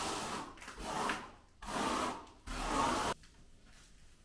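Three long scraping strokes as reinforcing mesh is worked into the wet render base coat on the wall, the last one cutting off abruptly about three seconds in.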